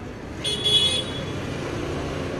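A car horn toots once, briefly, about half a second in, over the low murmur of a crowd.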